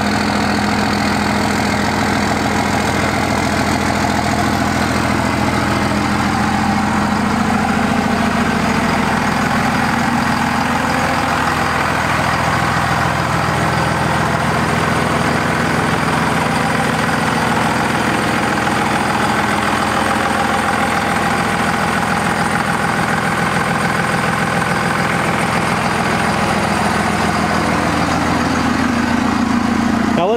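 Second-generation Dodge Ram pickup's 24-valve Cummins diesel idling steadily.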